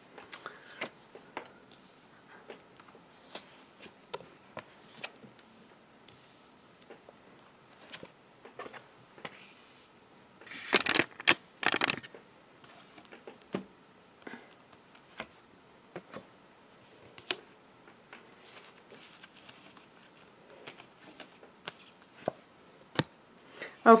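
Tarot cards being handled and dealt onto a cloth-covered table: light, scattered taps and slides as cards are drawn and laid down, with a louder, brief flurry of card rustling about eleven seconds in.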